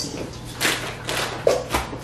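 Chopped romaine lettuce being scooped and dropped into a plastic salad spinner basket: a few short rustles and light taps.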